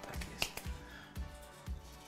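One sharp plastic click about half a second in, then a few faint ticks, as the white plastic bracket parts of a roller blind are pushed together and snap into place. Quiet background music runs underneath.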